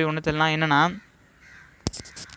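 A man's voice drawing out one syllable for about a second, then a quiet pause broken by a single click near the end.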